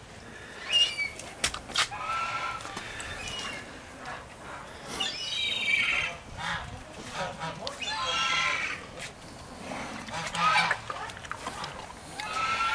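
A series of about five drawn-out honking animal calls, each lasting around a second and spaced a couple of seconds apart, some sliding down in pitch. Two sharp knocks come early in the series.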